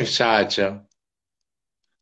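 A woman's voice finishing a short spoken phrase in Turkish, cut off a little under a second in, then dead silence.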